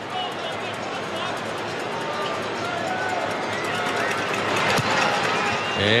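Rugby stadium crowd murmuring while a long penalty goal kick is taken, the noise swelling gently toward the end as the ball is in flight.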